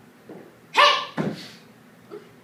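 A person's voice: a short, loud cry about three-quarters of a second in, followed by a second, shorter one half a second later.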